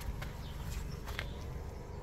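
Outdoor background with a steady low rumble, footsteps on rough, rocky ground and a few faint short bird chirps.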